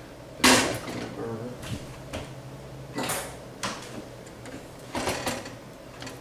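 Spatula stirring a thick corn mixture in a stainless steel saucepan, with scattered scrapes and knocks against the pan, the loudest about half a second in.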